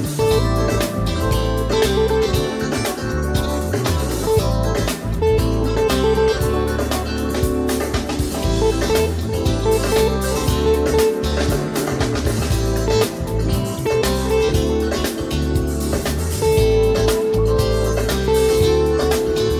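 Electric guitar soloing on a single note, A, in short phrases of a few notes with pauses between them, over a backing track in A Dorian. Near the end the note is held long.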